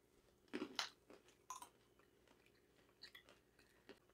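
Faint crunching as people bite into and chew coated almonds: a few short, sharp crunches in the first second and a half, then only faint ticks.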